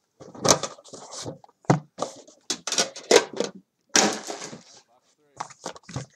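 Short bursts of muffled talking, mixed with handling noise from a cardboard trading-card box being opened by hand. A brief harsher rustle comes about four seconds in.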